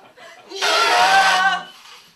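An improvising vocal choir calling out together in one loud group burst of about a second, many voices on stacked, held pitches over a low note.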